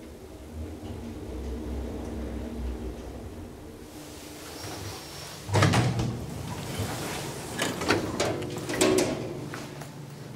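A steady low hum inside a KONE traction elevator car as it stands at the floor. About five and a half seconds in comes a loud clatter of the elevator's sliding doors opening, followed by several sharper knocks and clunks.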